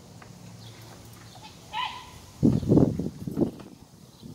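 A child sliding down a red plastic tube slide: a loud, rumbling rush of body on plastic lasting about a second, starting about two and a half seconds in. It is preceded by a short high-pitched call.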